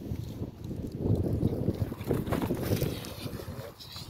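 Wind buffeting the microphone: an uneven low rumble that rises and falls throughout.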